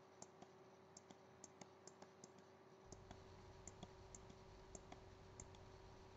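Near silence with faint, irregular small clicks, a few each second, over a steady faint hum.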